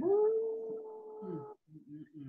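One long held vocal note, rising quickly at the start, then steady at one pitch for about a second and a half before it stops.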